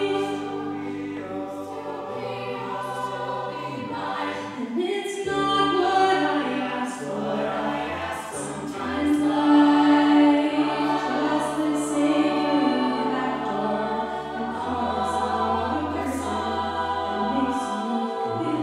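Mixed a cappella group singing: a female soloist carries the melody into a microphone over the ensemble's sustained backing harmonies, with low notes held underneath for several seconds at a time. It swells to its loudest about halfway through.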